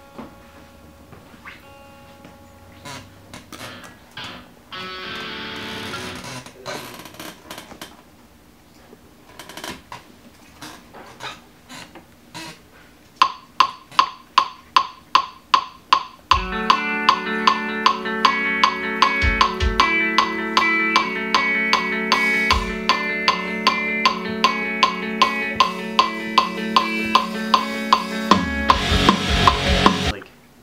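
Fender Telecaster electric guitar being played: scattered single notes at first, then steady repeated picked notes about halfway in, joined a few seconds later by drums and bass in a loud full-band metal mix.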